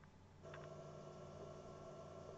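Near silence, then about half a second in a faint steady hum with a few held tones comes on from the Audiocrazy AC-RC86BT boombox's speaker as its audio output comes on for USB playback.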